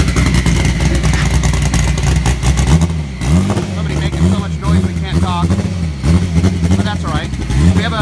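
An engine running nearby, a steady low drone for about the first three seconds, then its pitch rising and falling in a regular rhythm two to three times a second.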